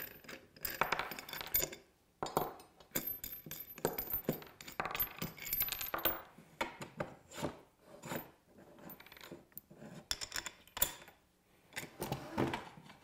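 Irregular metal clicks, clinks and scrapes as small nuts, washers and bolts are handled and set down on a wooden bench, and an aluminium connector block slides and seats onto steel parallel-clamp rails to join two short clamps into one long clamp.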